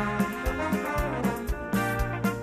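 Live orchestra with a full brass section of trumpets, trombones and French horns playing a tune together over a steady drum beat of about two beats a second.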